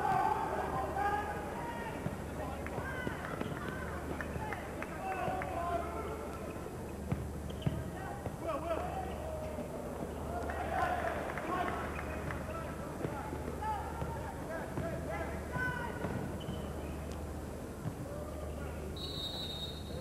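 Basketball arena sound during live play: crowd and player voices chattering and calling, with basketball bounces and short knocks from the court. A low hum pulses steadily underneath.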